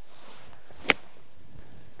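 A golf ball struck by a 56-degree wedge on a pitch shot: one sharp click about a second in.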